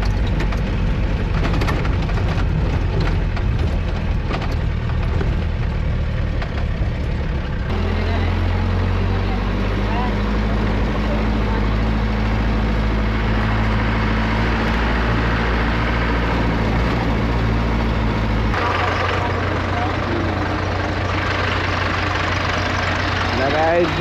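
Truck engine running steadily while driving, heard from the cab. The engine sound changes abruptly about a third of the way in and again near three-quarters.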